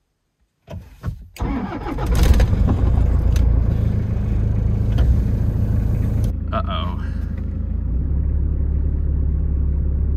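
Van's diesel engine cranking over and catching about a second and a half in, then settling into a steady idle. It is started on a low battery drained by the glow plugs, with a weak alternator that is not keeping the voltage up.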